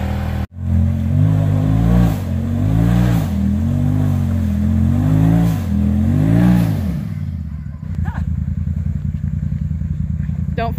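Polaris RZR side-by-side's engine revving up and falling back about five times as it climbs a rutted dirt hill, then settling into a steady, fast low rumble at idle for the last couple of seconds. There is a short break in the sound just after the start.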